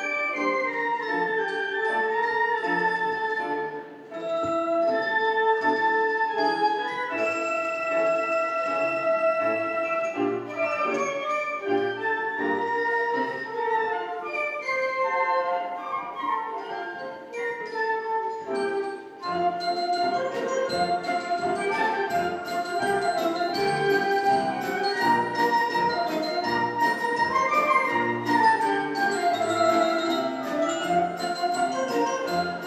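Large flute ensemble playing a piece together, sustained melody notes in several parts. There are short breaks about four seconds and nineteen seconds in, after which the music grows fuller.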